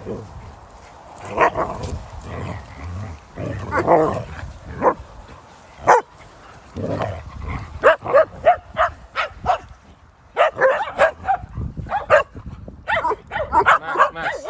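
Dogs barking during rough group play, in short excited barks that come in quick runs, thickest in the second half. The barking is loud enough that the handler takes it for one dog, Max, overdoing it and scaring the others.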